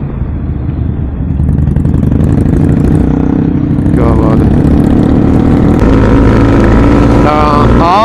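Motorcycle engine running steadily while riding, heard from on board the bike, getting louder about a second in and again around six seconds in.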